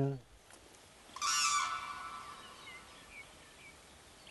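Common crane giving one loud call about a second in, fading away over the next second or so, with faint short chirps of small birds behind it.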